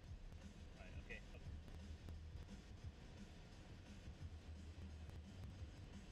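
Faint, steady low rumble of a Fiat nine-seat minibus driving at low speed, heard from inside the cabin. A brief faint high sound comes about a second in.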